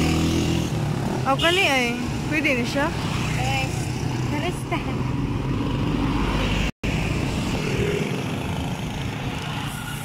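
Road traffic passing close by: motorcycles and cars driving past, with the engine sound strongest at the start, and voices in the background. The sound cuts out for an instant a little past the middle.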